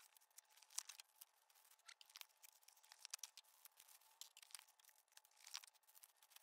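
Faint crinkling and crackling of a clear plastic packaging bag and cardboard box as a servo drive is unpacked and handled, a scatter of small, irregular crackles.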